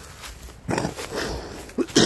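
Footsteps through dry fallen leaves, with a short burst of the walker's voice, like a cough, right near the end.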